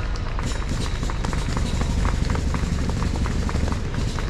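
Running footsteps of marathon runners slapping on asphalt, a quick, even patter of about three steps a second, over a steady low rumble.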